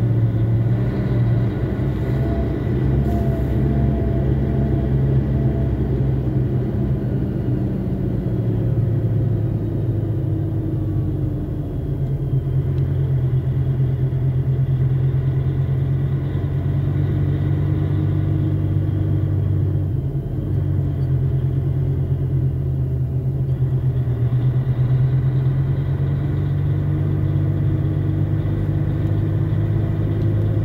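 Vehicle engine and road noise heard from inside the cab while driving slowly, a steady low drone whose pitch changes about nine seconds in.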